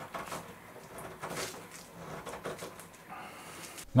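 Screw clamp being tightened by hand onto a plywood board: quiet, irregular small clicks and scrapes.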